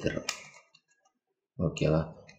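A voice speaking briefly at the start and again near the end, with one sharp plastic click about a third of a second in as a layer of an Axis Cube puzzle is turned; silence in between.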